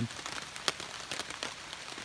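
Light rain falling on a 20D silpoly hammock tarp: drops ticking irregularly on the fabric, with one sharper drop strike about two-thirds of a second in.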